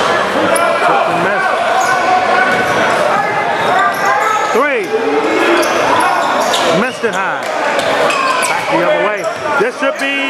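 Basketball game sounds on a hardwood gym court: a ball dribbling and sneakers squeaking over the chatter of players and spectators, with sharp squeaks about five and seven seconds in.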